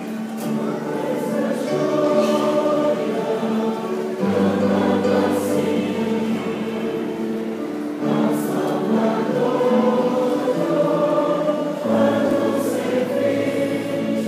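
Church choir singing a hymn in held notes, a new phrase beginning about every four seconds.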